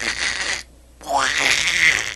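A man making two loud, hoarse non-word vocal cries, each sliding up in pitch, the second longer than the first.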